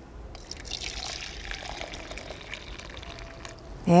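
Hot water poured from a glass mason jar into a plastic measuring jug: a steady, light pour that thins out near the end.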